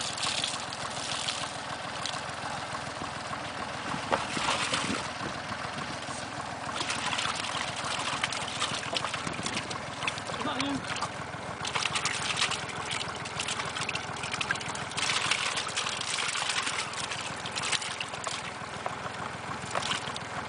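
Water splashing and dripping as a landing net full of small roach is dipped into and lifted out of a plastic tub, with irregular bursts of sloshing.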